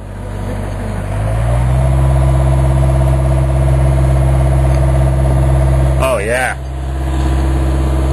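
John Deere digger's diesel engine revving up about a second in, then running steadily at raised revs.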